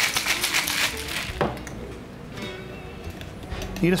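Ice rattling hard inside a two-piece stainless steel cocktail shaker being shaken, about six rattles a second, stopping a little over a second in.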